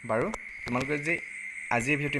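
A man's voice speaking in short phrases, over a faint steady high-pitched whine.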